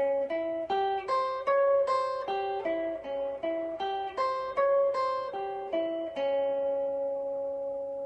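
Guitar playing a D-flat diminished major seven arpeggio as single plucked notes from the sixth fret of the third string, about two to three notes a second, climbing and falling an octave twice. About six seconds in, it settles on one held note that rings out and slowly fades.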